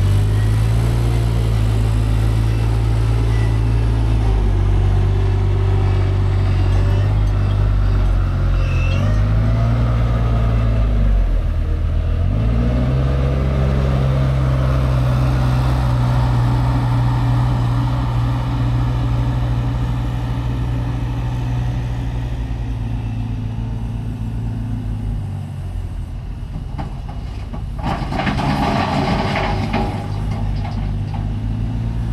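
Diesel engine of a Weidemann compact loader running at work nearby, its pitch dropping and rising again several times as the load changes. Near the end there is a short burst of louder noise.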